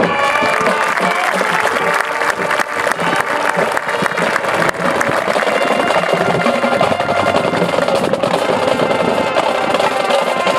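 High school marching band playing, with drums and percussion prominent alongside the sustained band chords.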